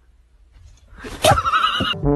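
A loud, wavering, whinny-like cry lasting about a second, starting about a second in.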